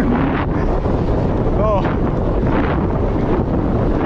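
Loud, steady wind rushing over the microphone of a vehicle moving at speed, with a brief voice sound about one and a half seconds in.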